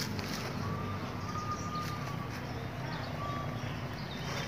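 Faint outdoor background noise: a low steady hum with a thin high tone that comes and goes a few times.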